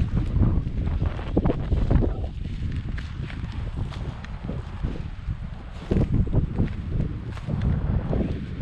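Wind buffeting the camera's microphone: a loud, uneven low rumble that swells and drops.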